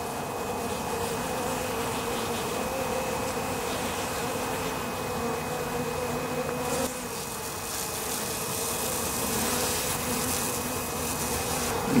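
Honeybees buzzing around a spill of honey where hungry foragers are feeding: a steady, continuous hum of wingbeats.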